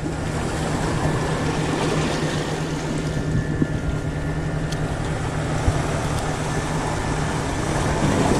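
A steady, low engine drone with a continuous hum, over an even wash of outdoor noise.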